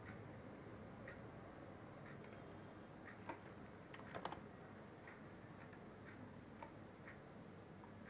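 Near silence broken by a few faint, sharp clicks of a computer keyboard and mouse, several of them bunched about three to four seconds in.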